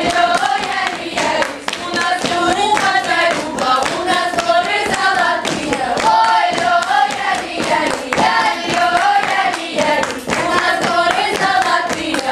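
A children's folk ensemble singing a South Russian round-dance song together, with mostly girls' voices in a bright, open folk style. A steady rhythm of sharp claps runs under the singing.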